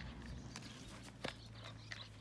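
A Belgian Malinois puppy at its food bowl: faint, with a few soft clicks, one about a second in and another near the end, as it noses and eats from the bowl.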